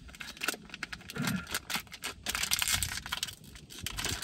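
Irregular crinkling and crackling of a protein-brownie wrapper, a plastic snack packet, being pulled and twisted by hand in repeated tries to tear it open. The packet is not yet giving way.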